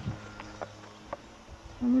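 Low, steady buzzing of a flying insect, with a few faint short clicks.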